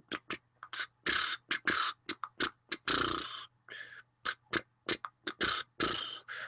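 A person beatboxing into the microphone: an irregular run of short mouth hisses, clicks and puffs, about a dozen in six seconds.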